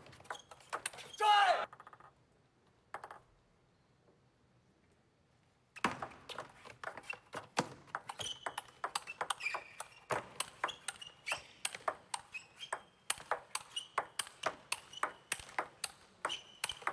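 Table tennis rally: a plastic table tennis ball struck back and forth by rackets and bouncing on the table, a quick, steady run of sharp clicks that starts about six seconds in after a short quiet spell and keeps going.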